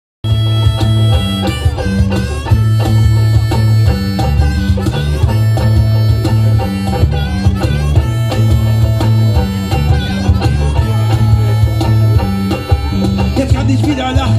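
Live rock band playing amplified over a PA: a repeating bass line and drum beat under electric guitar and harmonica.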